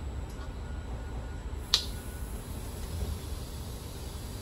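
Steady low rumble of a moving passenger train heard from inside the carriage. A little under two seconds in there is one sharp plastic click: a sunscreen bottle's flip-top cap snapping shut.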